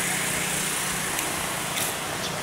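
A steady engine hum under a constant hiss of outdoor street noise, with a couple of faint clicks.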